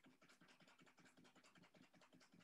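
Faint, rapid scratching and rubbing of a ski boot against its binding and the ski strap holding it, as the boot is twisted side to side to test a strap repair of a broken tech binding heel piece.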